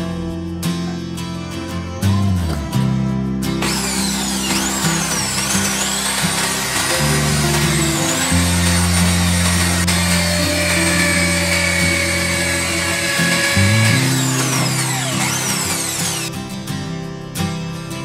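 Electric drill with a thin bit boring into the metal body of a padlock. It runs for about thirteen seconds, starting a few seconds in and stopping near the end, and its whine slides in pitch as it bites. Acoustic guitar music plays underneath throughout.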